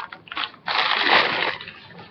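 Wrapping rustling as it is handled and pulled off a glass piece: a few small handling noises, then a dense burst of rustle lasting just under a second.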